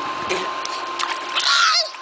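Pool water splashing as a baby pats at the surface, with a child's brief high-pitched squeal about one and a half seconds in.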